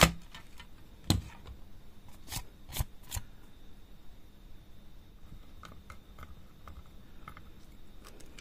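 Scattered sharp clicks and taps from handling a plastic DVD and small screws, four clear ones in the first few seconds, then a few fainter ticks later on.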